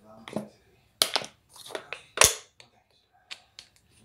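Thin plastic water bottle crinkling and crackling as it is handled, in a few sharp crackles with quiet gaps between them, the loudest a little over two seconds in.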